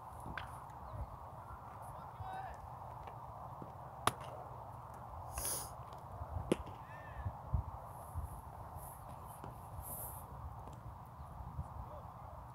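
Quiet outdoor ambience at a baseball practice with faint distant voices, broken by a sharp smack about four seconds in and a smaller one about two seconds later.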